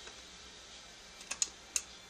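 Three sharp plastic clicks in quick succession in the second half, from the cassette-deck controls of an Aiwa NSX-999 mini hi-fi system being operated to select tape deck 2.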